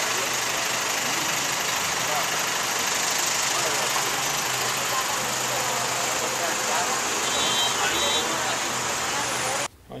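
Steady city street noise with a vehicle engine idling and faint voices in the background, and a brief high beeping near the end. It cuts off abruptly just before the end.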